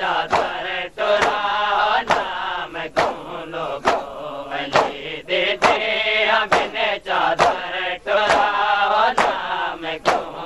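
Men chanting a noha together while beating their chests in matam, the sharp slaps of hands on bare chests landing in time with the chant, a little faster than one a second.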